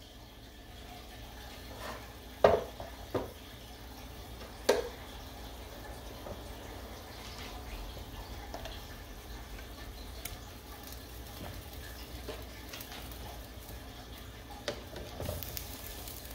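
A pot of pork-bone broth at a rolling boil, bubbling steadily, with a few sharp knocks of kitchenware. The loudest knock comes about two and a half seconds in, and two more follow within the next two seconds.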